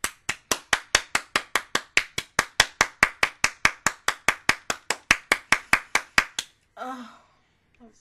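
One person clapping hands fast and evenly, about five claps a second for some six seconds, then stopping. A short voiced exclamation follows near the end.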